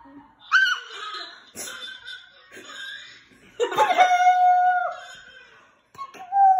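A baby's laughter mixed with adults' laughter and voices during a game of peekaboo, the baby heard through a phone's speaker on a video call. A long held voice comes about four seconds in.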